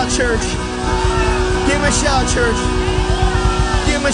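Live church worship band playing, with a held keyboard pad over bass and drums, and voices singing over the music.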